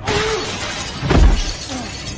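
Glass shattering as a man crashes through it, then a heavy thud about a second in, with short grunts.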